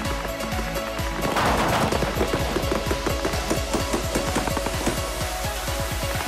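Background electronic music, with a rapid string of paintball marker shots starting about a second in and running most of the way through.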